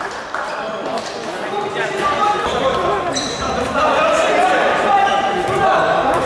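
Indoor futsal game with voices and shouts echoing around a large sports hall, and the ball being struck and bouncing on the hard court floor in short sharp knocks.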